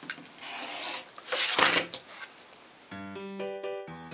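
Olfa 45 mm rotary cutter slicing through fabric along a ruler edge on a cutting mat in two strokes, the second louder. Background music comes in about three seconds in.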